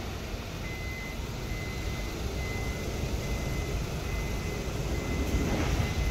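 Steady low rumbling background noise with no speech, with a faint high tone that breaks on and off, and a short louder burst of noise near the end.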